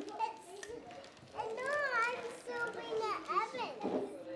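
Young children's high voices in wordless, sing-song vocalizing, the pitch arching up and down, from about a second and a half in.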